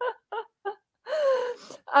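A woman laughing: three short, quick voiced pulses, then one longer drawn-out sound sliding down in pitch.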